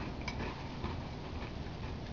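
A metal spoon clicking faintly against a ceramic cereal bowl a few times, irregularly spaced, while cereal is scooped and eaten.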